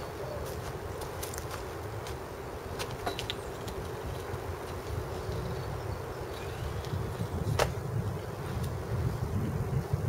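Steady low outdoor background rumble with a few faint knocks and clicks as a man jumps up to a horizontal metal bar, grips it and pulls himself over it in a chest-ward roll-over. The clearest knock comes a little past halfway.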